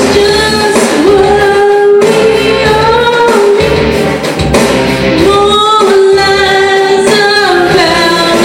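Karaoke: a woman singing a melody of long held notes over a loud backing track.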